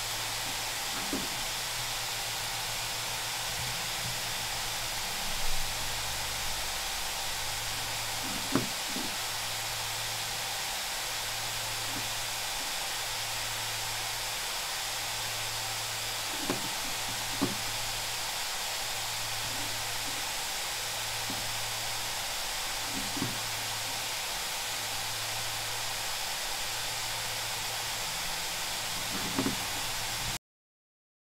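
Laptop cooling fans running as a steady whooshing hiss while the Intel Core i7-11800H is held at full Cinebench R23 load at about 95 °C, the temperature at which it throttles. Under the hiss a low hum pulses on and off about once every 1.3 seconds, with a few faint clicks.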